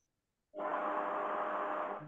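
Steady hiss with a faint low hum, starting abruptly about half a second in and cutting off just at the end. It is the background noise of a participant's open microphone, carried over the video call.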